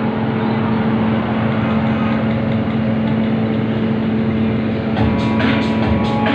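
Ferry's onboard machinery running with a steady hum. From about five seconds in, faint music or voices come in over it.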